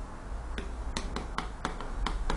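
Chalk clicking against a blackboard as letters are written: a quick, uneven series of about six sharp clicks, starting about half a second in.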